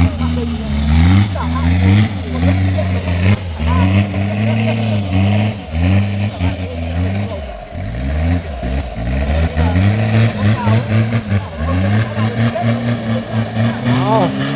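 Off-road race vehicle's engine revving hard and repeatedly, its pitch climbing and dropping again and again about once a second as it is driven through deep mud.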